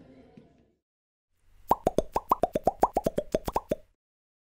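A quick run of about sixteen cartoon pop sound effects over two seconds, each a short plop that drops slightly in pitch. It fits one pop for each of the sixteen letters of a title being typed onto the screen.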